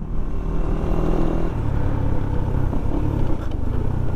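Honda Winner X 150 motorcycle's single-cylinder engine running steadily while riding, with road and wind noise.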